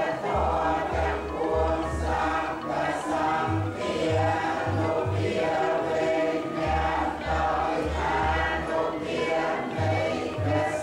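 Many voices chanting together in a steady, rhythmic unbroken stream: Buddhist prayer chanting.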